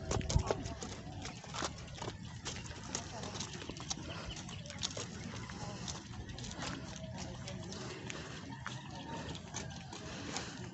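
Footsteps of a person walking on a rough dirt road, a quick regular series of short scuffing steps over a low steady background noise.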